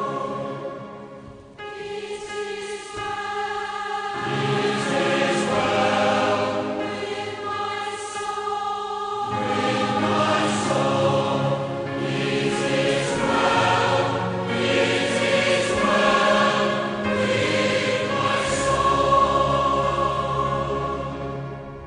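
Choir music with long held chords that change every few seconds, dipping briefly about a second in before going on.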